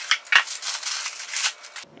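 Small cardboard box being pulled open by hand: the cardboard flaps scraping and rustling, with one sharp click about a third of a second in.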